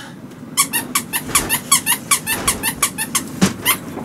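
A rapid run of short, high squeaks, about six a second, each bending down slightly in pitch, like something being rubbed or squeezed back and forth.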